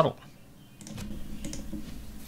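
Faint computer keyboard typing, a light patter of key clicks starting a little under a second in.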